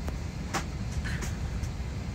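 Steady low rumble of an airliner cabin, the engines and air system droning, with a few short clicks or knocks about half a second and a second in.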